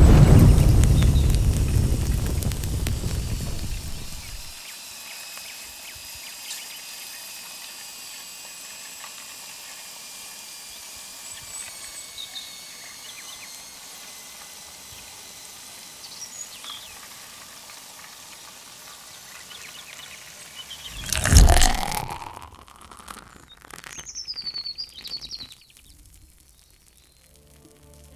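Edited transition sound design: a deep boom at the start that dies away over about four seconds. Then faint birdsong over a quiet outdoor background, with a loud whoosh about twenty-one seconds in.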